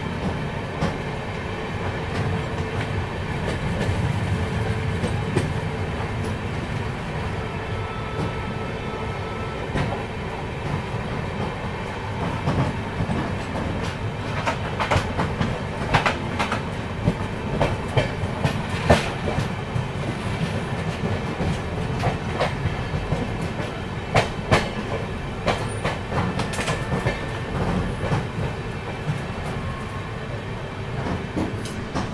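Express train with LHB coaches running at speed, heard through an open coach doorway: a steady rumble of wheels on rail with irregular sharp clicks over rail joints, while another train runs close alongside on the next track.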